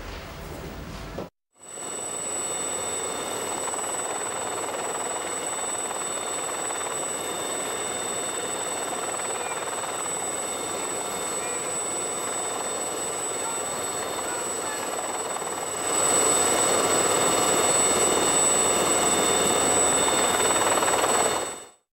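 Helicopter cabin noise: a steady engine-and-rotor rush with a high turbine whine. It starts after a short break about a second in, gets louder about three-quarters of the way through, and cuts off just before the end.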